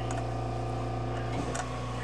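Steady low electrical hum with fainter steady tones above it, and a soft tap about one and a half seconds in.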